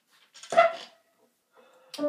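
A single short, loud yelp-like cry about half a second in. Near the end comes a click, and the first piano notes start.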